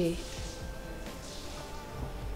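A woman says one word at the start. Then a faint drone of soft background music follows, several thin steady tones held evenly together.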